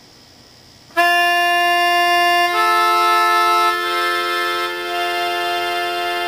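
A Melodihorn, a blown free-reed keyboard instrument like a melodica, sounds a single held note that starts about a second in, then builds a chord as a second and then a third note are added. Each added note makes the overall tone a little softer, because the breath pressure is not raised to feed the extra reeds.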